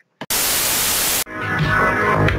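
A burst of static hiss lasting about a second that starts and cuts off abruptly, used as an editing transition. Electronic music then rises in.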